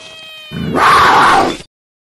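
A cat-like yowl, then a louder harsh hiss-like burst lasting about a second that cuts off abruptly.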